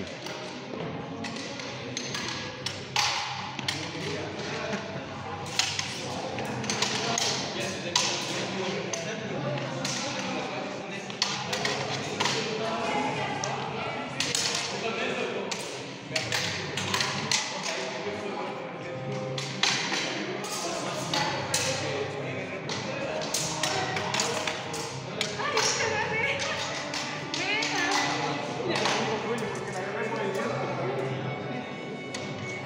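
Practice rapier blades tapping and clicking against each other in a sparring bout: many sharp knocks at irregular intervals, with thuds of footfalls on a hard tiled floor.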